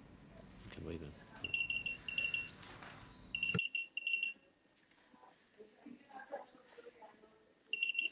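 Rapid high-pitched electronic beeping in three short bursts of several beeps each. Faint room noise behind it cuts off abruptly partway through.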